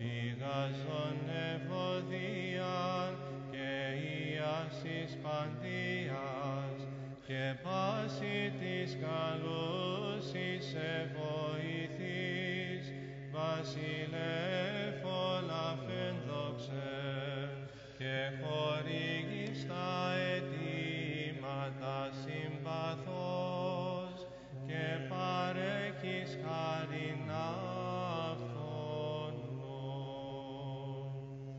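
Byzantine chant: a melismatic sung melody moving over a steady held low drone (the ison), in phrases with short breaks between them.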